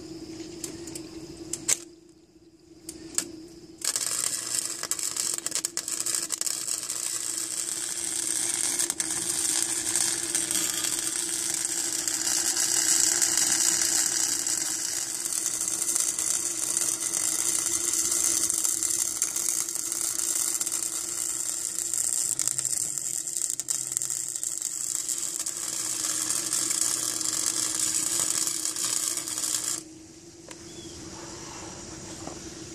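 Wire-feed welder arc crackling steadily as a bead is run on square steel tubing, starting about four seconds in after two brief arc strikes.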